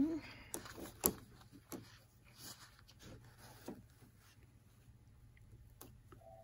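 Faint, irregular clicks and taps over a low steady hum from a Bernina domestic sewing machine stitching slowly while an acrylic quilting ruler is guided against its foot.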